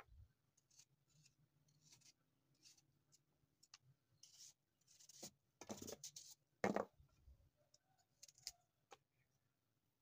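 Kitchen knife paring the skin off a small fruit held in the hand: faint, short scraping and cutting strokes, with the loudest few a little past the middle.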